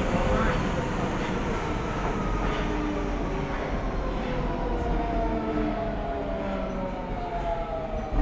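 Nagoya subway 5050-series train running, its GTO-VVVF inverter still on the original, unmodified software. The inverter whine is several tones falling slowly in pitch over the rumble of wheels and track, as the train slows.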